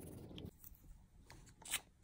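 Faint rustling and handling noise of corrugated cardboard and a hot glue gun as glue is run into a card housing, with a short sharp click near the end.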